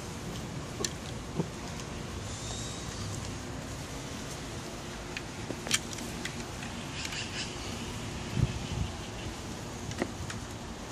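Steady outdoor background noise, like distant traffic, with a few light clicks and a pair of dull knocks near the end.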